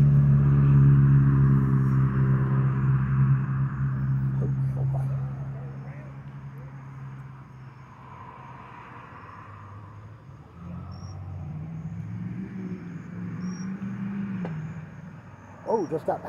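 A motor vehicle's engine running as a steady low hum, fading away over the first five or six seconds; a second engine swells and falls away again near the end. Crickets chirp faintly throughout.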